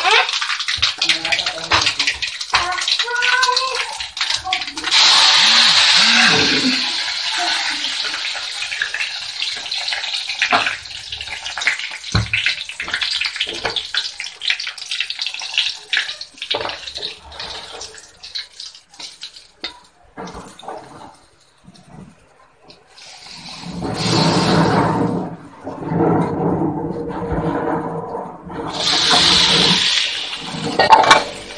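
Steel pots, lids and spoons clink and knock on a kitchen counter and stove. Hot oil sizzles in a steel kadai as a tempering fries, loudest for a few seconds early on, with more bursts of sizzling near the end.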